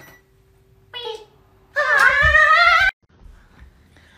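A high-pitched voice gives a short call about a second in, then a longer, wavering, meow-like call near the middle.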